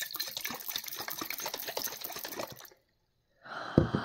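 Water sloshing and churning inside a capped glass jar as it is whirled rapidly in circles to spin up a vortex, stopping suddenly a little under three seconds in. Near the end a short burst with a low thump as the jar is set down on the table.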